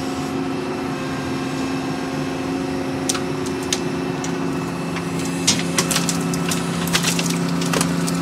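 Volvo excavator running steadily with a low, even engine and hydraulic hum as its gravel-loaded bucket swings over the pool forms. Scattered sharp ticks come in from about three seconds in and grow more frequent near the end.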